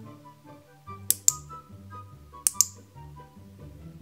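Background music with a simple melody over a repeating bass line. Twice, a quick pair of sharp clicks stands out above it, about a second in and again about two and a half seconds in: small hard plastic toy parts being snapped together by hand.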